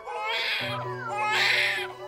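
Newborn baby crying in two long wails, over background music.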